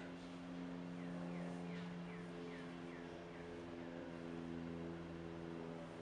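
A steady low hum made of several held tones. Between about one and three seconds in, a few faint short falling chirps sound over it.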